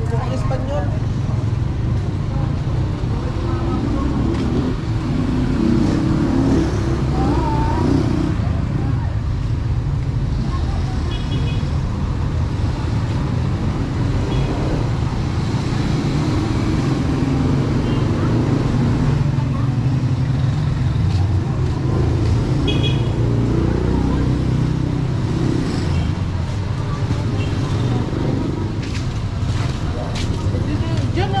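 Busy street ambience: a steady low rumble of traffic from running and passing vehicles, with passers-by talking. A short, high pulsing tone is heard twice, once about a third of the way in and once about two-thirds in.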